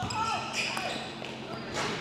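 Basketball gym during play: faint players' voices and court noise with a ball bouncing, then a short swish just before the end as the ball drops through the net.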